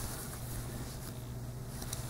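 Quiet room tone with a steady low hum and faint rustling of wool-blend yarn being worked with a metal crochet hook.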